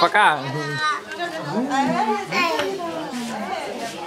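Several people talking and calling out excitedly over one another, children's voices among them.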